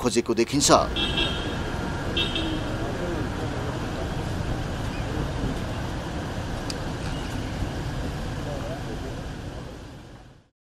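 Steady outdoor background noise like traffic, with faint voices and two short high tones about one and two seconds in; it fades out near the end.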